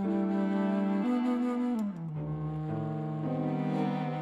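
Bass flute playing slow, sustained low notes in a jazz piece over bowed strings including cello. About halfway through, the low line slides down to a lower held note.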